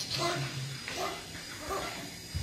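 Newborn baby crying just after delivery: short, high cries, about four in quick succession.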